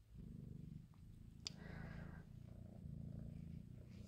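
Domestic cat purring close by, a faint low rumble that comes in repeated spans, with a single sharp click about a second and a half in.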